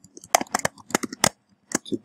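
Typing on a computer keyboard: a quick run of keystrokes starting about a third of a second in and lasting about a second, with a couple more near the end.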